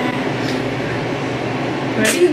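Steady rushing background noise with a low hum, unchanging throughout, with no distinct events.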